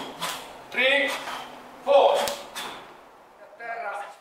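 A man calling out a drill cue ("sopra") about once a second, with sharp cracks or swishes alongside the calls, then a brief quieter stretch near the end.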